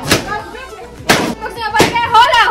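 Excited voices in a room, cut by three sharp thumps: one near the start, one about a second in and one near the end.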